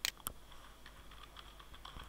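Typing on a computer keyboard: two sharper key strikes near the start, then a quick, irregular run of lighter keystrokes.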